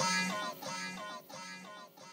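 The closing bars of a hyperpop track fading out: a high melodic line of short, quickly repeated notes, getting steadily quieter.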